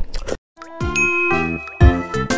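Close-miked wet chewing cuts off abruptly. After a short gap, a bright chiming outro jingle of ringing notes starts, its loudest note landing with a low hit near the end.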